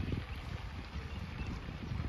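Wind buffeting the microphone in irregular low gusts over a steady wash of pond water.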